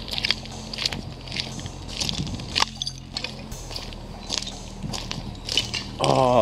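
Footsteps crunching on a gravel path littered with broken slate shards, an uneven step about every half second to second. A steady low hum runs underneath.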